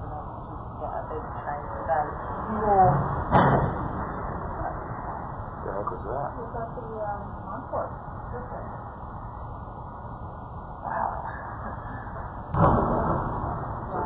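Muffled camcorder recording from an office across the street, with voices in the room, catching the first hijacked plane striking the World Trade Center's North Tower as a sudden loud bang about three seconds in. About nine seconds later comes a second, longer boom, which the narration calls a second explosion.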